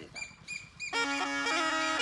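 Snake charmer's been (pungi), a reed pipe blown through a gourd, starts playing about a second in: a steady drone under a reedy melody that moves in steps.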